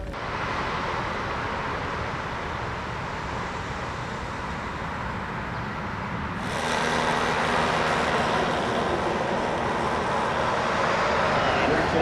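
Steady outdoor road traffic noise, with no single vehicle standing out; about six and a half seconds in it cuts abruptly to a louder, hissier stretch of the same kind of noise.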